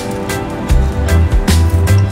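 Background music with a steady beat: drum hits a little over twice a second over a pulsing bass line.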